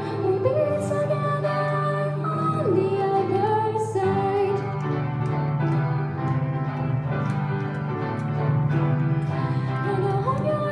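Mixed junior high school choir singing a song, the voices holding notes and moving from pitch to pitch.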